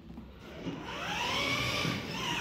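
Electric drive motors of a ride-on toy UTV whining as it pulls away under pedal throttle. The whine starts about half a second in, rises in pitch, then holds steady.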